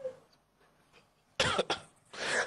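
A person coughing once, a short loud harsh burst about a second and a half in, after a brief quiet pause.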